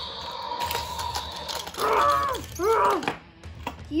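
Electronic sound effects from a Mattel Destroy 'N Devour Indominus Rex toy's built-in speaker: a steady held tone, then two loud roar-like calls about two and three seconds in.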